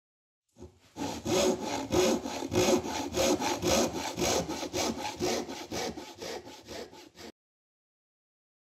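Hand saw cutting through wood in even back-and-forth strokes, about three a second, getting quieter towards the end and stopping about seven seconds in.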